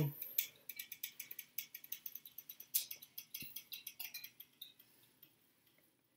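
Drawing compass swinging its pencil lead across paper to mark an arc: a quick run of light, scratchy ticks, with one soft knock in the middle, stopping about a second before the end.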